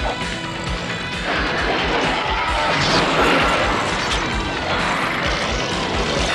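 Crashing, rumbling cartoon battle sound effects over dramatic background music, continuous and loud, with a rapid low pulse underneath.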